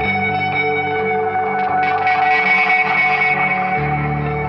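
Electric guitar played through effects pedals, sustained chords ringing out under a wash of effects. About a second and a half in, the playing gets brighter and busier for a couple of seconds, then settles back to the sustained ring.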